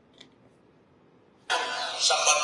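Quiet room tone, then about one and a half seconds in, the audio of a video played on a phone starts suddenly and loudly.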